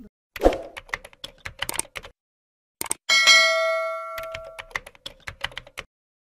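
Sound effects of a subscribe-button outro: a run of sharp clicks, a short pause, then a bright bell-like ding about three seconds in that rings on for a second and a half as it fades, with more clicks after it.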